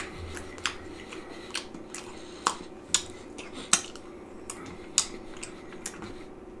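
A person chewing a mouthful of pizza with pork and beans close to the microphone: irregular wet mouth clicks and smacks, about eight in six seconds, over a faint steady hum.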